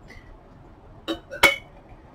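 Dishes clinking twice, about a second in and again half a second later: a hard, ringing knock of china as a plate is picked up.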